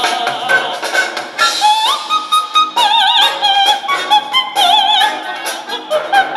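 Operatic soprano singing with a symphony orchestra: long held notes with wide vibrato, the voice sliding up to a higher note about two seconds in, over strings and woodwinds.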